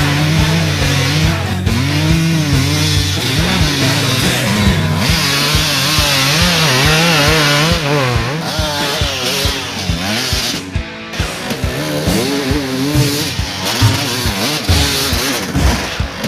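Heavy metal rock music with a steady drum beat. Mixed in with it, a Suzuki RM250 two-stroke dirt bike engine revs up and down.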